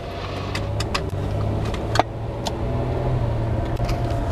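Car engine and road noise heard from inside the cabin: a steady low hum that grows a little louder, with a few light clicks, the sharpest about halfway through.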